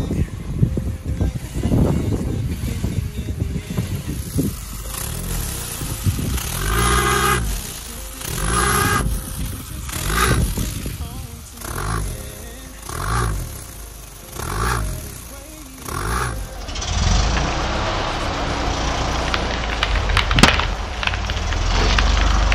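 A Suzuki hatchback's engine revved in short bursts, about one every second and a half, each rising and falling in pitch, as the car strains against a tyre stuck in glue. Near the end comes a low steady rumble with crackling and one sharp crack, as the tyre peels up from the glue.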